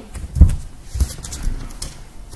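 A few dull thumps: the loudest about half a second in, then three lighter ones roughly half a second apart.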